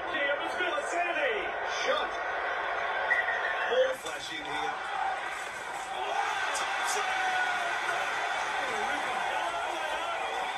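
Rugby league TV broadcast audio: a commentator talking over a stadium crowd. The sound breaks off and changes about four seconds in as one clip gives way to the next.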